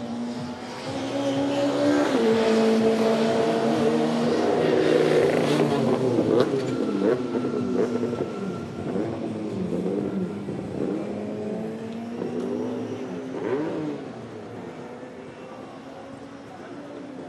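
SEAT León touring race car running hard on a wet track. The engine is loudest as it passes and its pitch repeatedly climbs and drops with gear changes, then it fades as it goes away. Tyres hiss through spray from the standing water.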